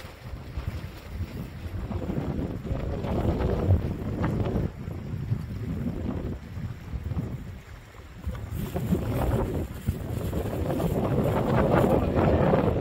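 Wind buffeting the microphone: a low rush that swells and eases in gusts.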